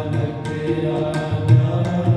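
Sikh kirtan: a ragi singing over a harmonium's held reed tones, with regular tabla strokes and deep bass-drum strokes from the tabla's larger drum.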